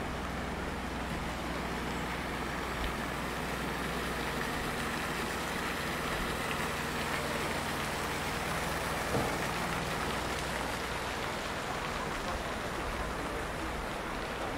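Steady splashing hiss of fountain water jets arcing into a river and spattering on its surface, with a low steady hum underneath.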